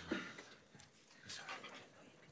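Faint rustling and breathy noises from a hand-held microphone being handled, with a brief soft bump just at the start.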